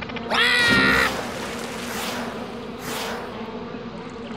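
A cartoon character's drawn-out yell, about a second long, as he leaps. It is followed by a steady rushing noise that lasts to the end.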